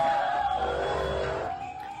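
Headline-transition music sting of a TV news bulletin: a chord that dies away slowly, with a short rising tone near the end.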